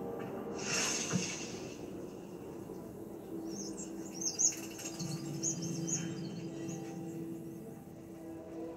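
Soft film score with a short hissing whoosh about a second in, then a string of short, high chirping calls through the middle.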